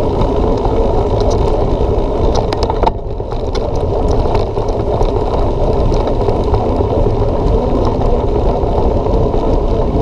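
Steady, muffled rumble of wind on the microphone and tyres rolling over a dirt track, picked up by a camera mounted on a moving mountain bike, with scattered light clicks and rattles from the bike. The rumble dips briefly about three seconds in.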